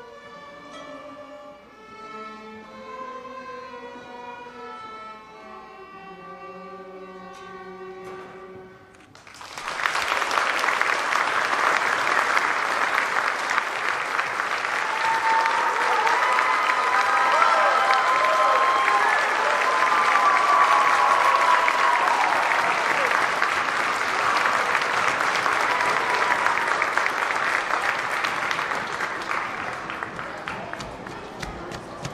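A student string orchestra of violins and cellos plays the soft closing notes of a piece. About nine seconds in, the audience breaks into loud, steady applause that lasts to the end.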